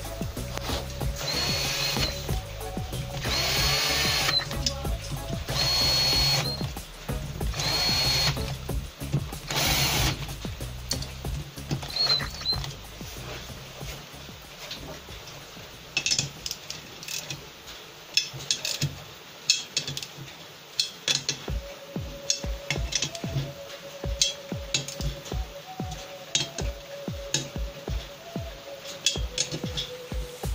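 A cordless drill-driver runs down the nuts of a VAZ 2108 8-valve head's camshaft housing in about five short bursts, each with a high whine, over the first ten seconds. From about halfway, a hand ratchet clicks steadily as the housing nuts are tightened.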